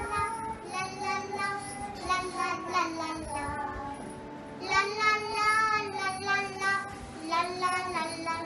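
A young girl singing a song solo, holding some notes for about a second.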